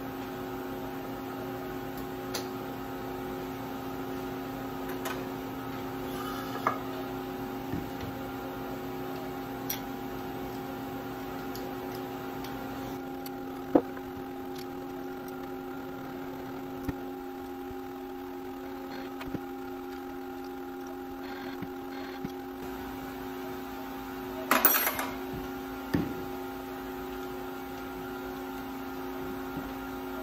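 Steady electrical hum of a vertical machining center standing idle between jobs, with scattered metallic clicks and clanks from the fixture and rotary-axis hardware being handled. The sharpest clank comes about halfway through and a short cluster of knocks comes near the end.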